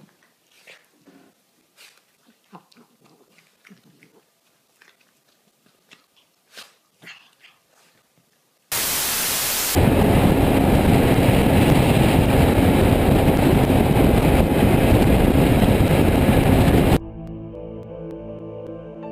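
Faint, scattered scuffling sounds from a small dog playing on a couch. About nine seconds in, a sudden loud, steady rush of wind and road noise takes over, from a camera on a motorcycle at freeway speed. Music replaces it near the end.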